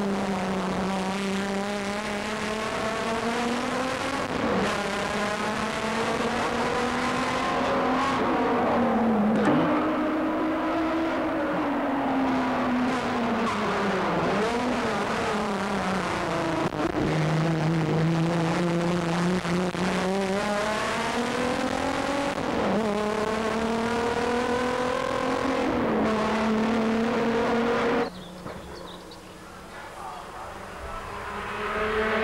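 BMW 635 CSi race car's straight-six engine at racing speed. Its pitch climbs through each gear and drops sharply at the shifts and going into bends, about half a dozen times. The sound falls away suddenly near the end.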